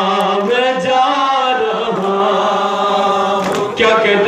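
A male reciter chanting an Urdu noha, a Shia mourning lament, into a microphone in long, drawn-out sung lines that slide in pitch.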